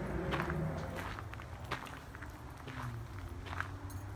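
Footsteps crunching on a gravel path, with faint irregular crunches over a low rumble of wind or handling on the microphone.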